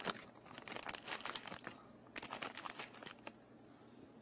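Plastic crinkling and crackling as a compost tumbler's plastic panel and its packaging are handled, in two bursts of about a second and a half each that stop a little past three seconds in.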